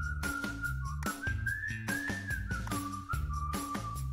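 A whistled tune, one wavering line that rises and falls, over background music with a steady beat and bass.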